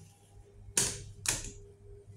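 Two sharp clicks about half a second apart as buttons on a Hitachi elevator car's operating panel are pressed, over a faint steady hum in the car.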